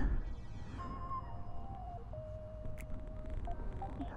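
Quiet outdoor background: a faint low rumble, likely wind on the helmet-mounted microphone, and a faint thin held tone that steps down in pitch about a second in and fades out near the end.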